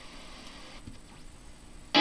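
Faint steady hiss from an old radio ad recording, then music starts suddenly and loudly right at the end.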